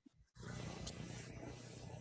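Faint steady hiss and low hum of an open video-call microphone, dropping to dead silence for a moment at the start.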